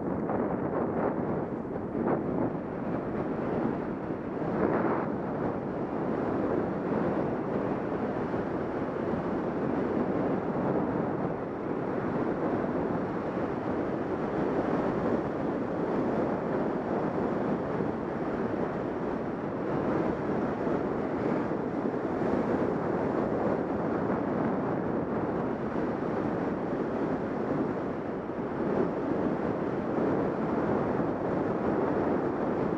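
Steady rush of wind over the camera microphone from the airflow of a fast, low speedflying descent.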